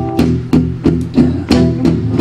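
Acoustic guitars strumming a steady chord pattern, about three strums a second, in an instrumental gap between sung lines of a live acoustic rock song.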